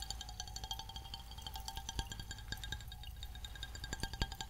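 Carbonated water fizzing in an open glass bottle held close to the microphone: a dense, irregular crackle of tiny bubble pops, many of them ringing as short pings at the same few pitches.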